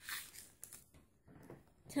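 Wooden craft stick stirring a liquid in a small glass bowl: faint, soft scraping and swishing, mostly quiet, with a short noisier scrape at the very start.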